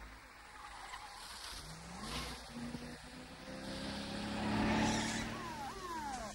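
A car approaching and accelerating, its engine note rising, the engine and tyre noise growing loudest about five seconds in. Near the end a police siren starts with quick repeated rising whoops.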